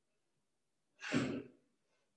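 A forceful exhalation, one short, strong breath out about a second in. It is one beat in a rhythmic series of breaths roughly every second and a half, each exhale marking a quick forward bend in a yoga breathing-and-bending exercise.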